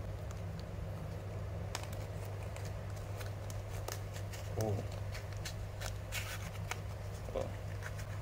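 Small paperboard box being handled and its end flap worked open by the fingers: scattered light clicks and scratches of card, over a steady low hum.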